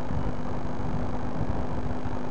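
Steady background hum and hiss with a low, uneven rumble; no distinct event stands out.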